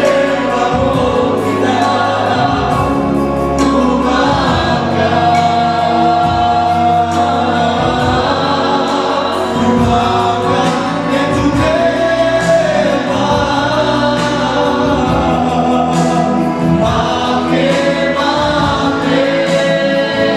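Amplified gospel praise song: singers lead through a PA system and the congregation sings along, over a band accompaniment with a steady bass line and beat.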